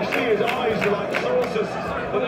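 Football match broadcast commentary: a man's voice talking over steady stadium crowd noise, played through cinema speakers.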